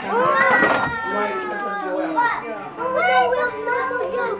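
Young children's high voices calling out and chattering over one another, with adult voices mixed in. The loudest call comes in the first second.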